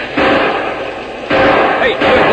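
Radio-drama battle sound effect: two sudden loud blasts about a second apart, each trailing off in a noisy rumble.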